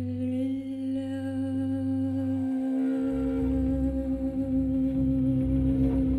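A wordless vocal note hummed and held steady over low cello tones, in a slow voice-and-cello jazz duo. About three seconds in, the low part turns rougher and flutters.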